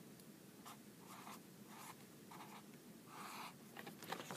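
Dry-erase marker writing on a small whiteboard: about half a dozen faint, short strokes, the one a little after three seconds the longest.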